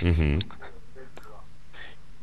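A man's voice over a telephone line: the end of a short word, then a pause of about a second and a half with only a steady low hum on the line.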